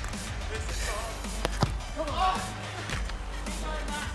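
Background music with faint distant voices, and two sharp thuds close together about a second and a half in: a football being struck.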